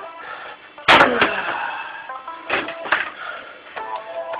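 Background music playing throughout, with a sharp, loud whack about a second in and a softer knock at about two and a half seconds: a water bottle being struck.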